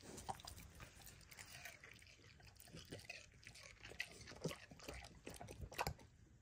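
A pig chewing a strawberry: faint, irregular clicks of its jaws working.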